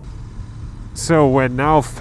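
Low, steady riding rumble from a Royal Enfield Interceptor 650 parallel-twin motorcycle and the wind, faint for about the first second, then a man starts talking over it about a second in.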